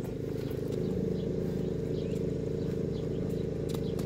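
A motor running steadily: an even, low hum with several steady tones.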